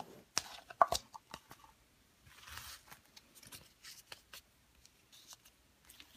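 Hands working modelling dough and a plastic Play-Doh tub: scattered small clicks and taps of plastic, the loudest about a second in, with a short soft tearing rustle of the dough about two and a half seconds in.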